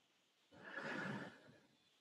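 A person's short, faint, breathy exhale near the microphone, lasting just under a second about half a second in.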